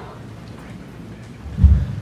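A single short, low thump about a second and a half in, like a knock on the microphone, over quiet room sound.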